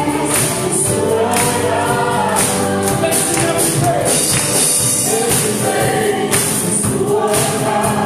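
A women's praise team singing a gospel song together through microphones, over a steady, regular beat.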